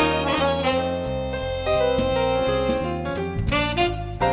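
Jazz background music: a lead wind instrument plays held melody notes over a bass line that steps from note to note, with piano.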